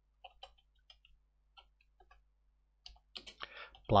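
Computer keyboard keys clicking as someone types: a sparse string of single keystrokes, coming quicker in the last second.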